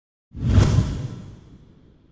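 A whoosh sound effect for a news headline banner, coming in about a third of a second in with a low rumble under it and fading away over about a second and a half.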